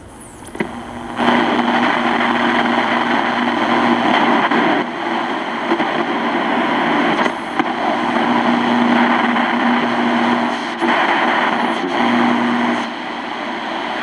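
FM radio static from a Sony SRF-59 pocket radio played through an external speaker, as the tuning dial is turned up the band between stations. A loud steady hiss starts about a second in and changes every few seconds, with a low hum coming and going as the tuning passes weak signals.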